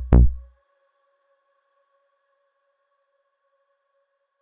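Electronic drum hits played back from a music program: the last of a short quick run lands at the start, fading out within about half a second. After that near silence, with only a faint steady high tone.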